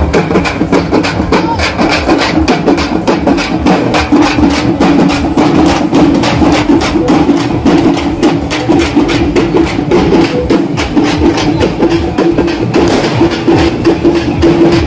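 A group of hand-held drums played fast and loud by a procession's drum band: dense, rapid strokes several times a second, with a steady held tone underneath.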